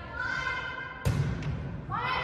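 A volleyball struck with a sharp thump about halfway through, with high-pitched shouts from players or spectators before it and again near the end.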